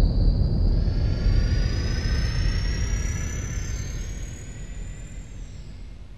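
Jet airliner engines: a low rumble under a high whine that glides steadily upward, the whole sound fading out gradually as the plane draws away.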